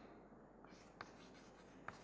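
Faint chalk writing on a blackboard: soft scratching strokes and a couple of light ticks as the chalk meets the board.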